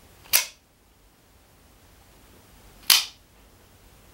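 Cheap double-action OTF (out-the-front) automatic knife firing its blade out and snapping it back in: two sharp clacks about two and a half seconds apart.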